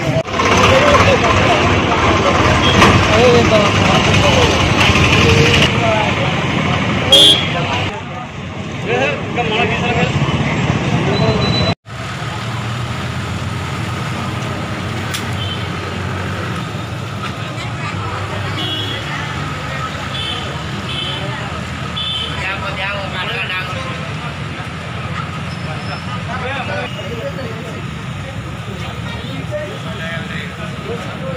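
Street noise of voices and passing traffic. For the first twelve seconds it is loud and dense with talk; after a sudden cut it continues as a quieter, steady street hum with scattered voices.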